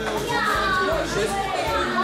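A crowd of young children chattering and calling out all at once, with music playing in the background.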